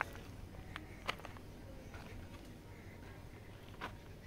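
Footsteps on a rocky path of jagged limestone: a few sharp clicks of shoes striking and scuffing loose stones, over a low steady rumble.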